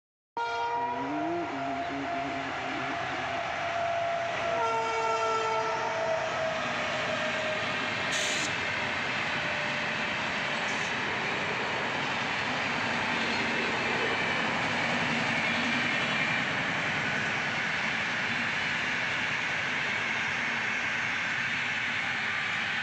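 Indian Railways electric locomotive sounding its horn twice, a long blast and then a shorter one about four seconds in, followed by the steady rolling noise of the passenger train running past.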